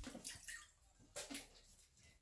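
Faint water sloshing in a toilet bowl, in two short bursts, one near the start and one just past the middle.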